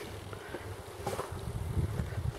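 Wind buffeting the microphone outdoors: a low, fluttering rumble that grows stronger about a second in.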